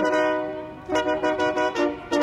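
Trombone, saxophone and trumpet playing together: a held chord that fades away, then a run of short repeated notes and a fresh chord near the end.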